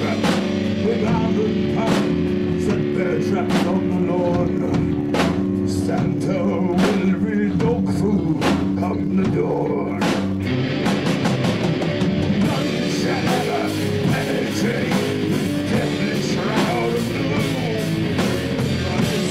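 Rock band playing live in the room: bass guitar, electric guitar and drum kit. About ten seconds in, the playing gets fuller and brighter.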